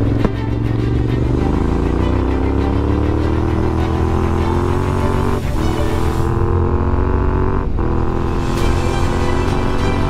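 Yamaha Ténéré 700's parallel-twin engine accelerating on a dirt road: the revs climb, dip twice as it shifts up, then hold steady.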